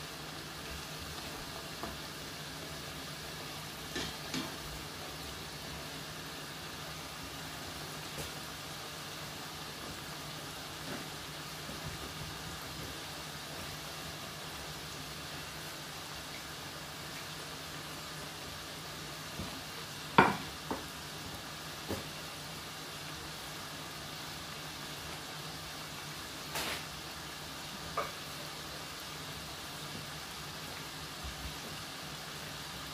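Festival dumplings deep-frying in a pot of oil: a steady sizzle. A few short knocks break in, the loudest about twenty seconds in.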